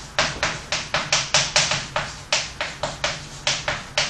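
Chalk tapping and scraping on a chalkboard as a formula is written: a quick, uneven run of sharp taps, about five a second.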